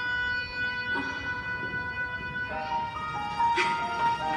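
Soft film-score music with long held chords, heard through a theatre's sound system; the chord changes about a second in and again about halfway through.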